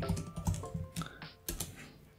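Typing on a computer keyboard: a quick, irregular run of separate key clicks.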